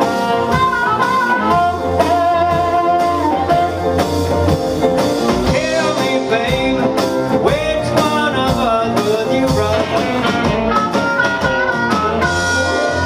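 Live blues band playing: an amplified harmonica solo over electric guitar, upright bass, drums and piano.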